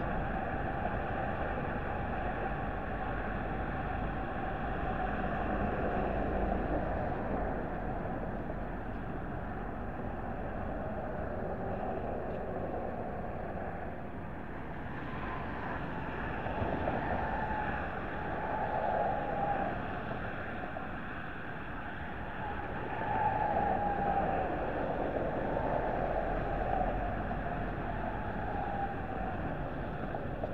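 Steady outdoor rumble of wind and road traffic, with several louder swells that rise and fall in the second half.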